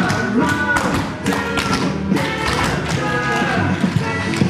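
Tap shoes of a group of dancers striking a wooden floor in a clatter of taps and stamps, over recorded swing music.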